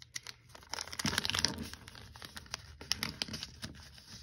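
A sheet of paper crinkling and rustling as it is folded and creased by hand, with many small crackles that are busiest about a second in.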